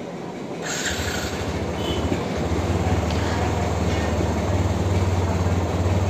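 TVS Apache RTR 160's single-cylinder fuel-injected engine being started on the electric starter after a throttle body clean. It catches about a second in and settles into a steady fast idle around 2000 rpm.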